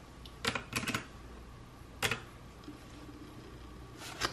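Keys clicking on a pink desktop calculator with round typewriter-style keys: one press about half a second in, a quick run of three just before one second, and a single press about two seconds in.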